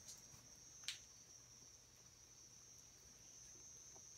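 Faint, steady high-pitched sound of crickets, with a single short click about a second in.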